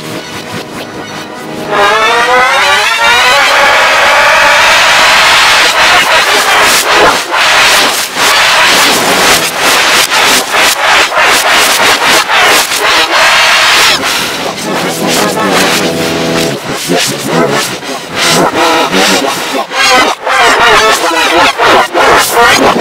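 Harsh, heavily distorted, pitch-shifted audio played in reverse, mixing cartoon soundtrack music with a boy's yelling. A steady tone gives way about two seconds in to a much louder, noisy and choppy sound.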